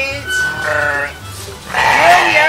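Sheep bleating twice: a wavering call about half a second in, and a louder one starting near the end.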